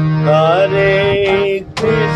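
Harmonium holding a steady low drone under a devotional kirtan melody, with a wavering sung line that rises and then holds a long note. The sound breaks off briefly near the end.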